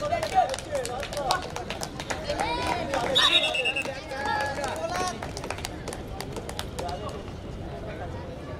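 Players and onlookers shouting and calling during a kho-kho chase, busiest over the first five seconds and thinner after, with many short sharp cracks of impacts throughout.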